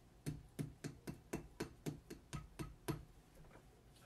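The flat of a metal blade patting modelling clay on a sculpted bust to pack and shape it: about ten quick, sharp taps at roughly four a second, stopping about three seconds in.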